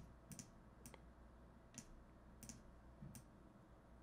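Faint computer mouse clicks, about six at irregular intervals, as on-screen items are selected and dragged.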